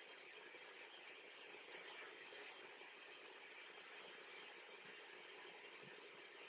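Near silence: faint room hiss, with one faint tick about two seconds in.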